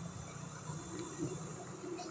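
Faint steady low hum with a light hiss, without any distinct events.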